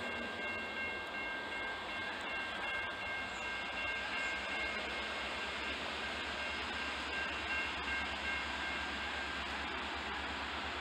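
Railroad grade-crossing warning bell ringing in rapid repeated strokes as the crossing gates lower. It stops shortly before the end, once the gates are down. A low rumble runs underneath and grows stronger about halfway through.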